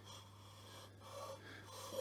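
Quiet room tone with a steady low hum and only faint handling noise.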